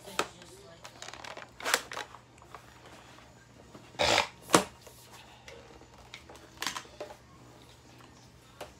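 Plastic parts of a spray mop being handled and snapped together: scattered clicks and knocks with a short scraping rustle, the loudest a sharp click about four and a half seconds in.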